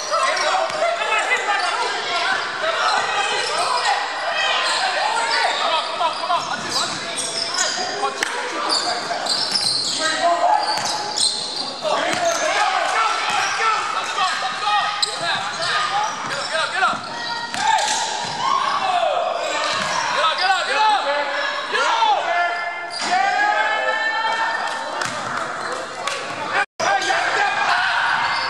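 Indoor basketball game on a hardwood gym court: the ball bouncing on the floor, sneakers squeaking and players calling out, with no let-up throughout.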